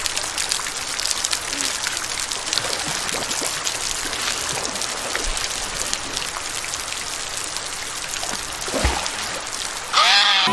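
Heavy rain pattering steadily on the water of a swimming pool, a dense hiss of fine drops, with the water stirred by someone swimming; a short low splash comes near the end.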